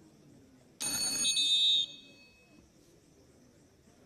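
A bell rings loudly for about a second, then rings briefly down, signalling the end of a wrestling bout.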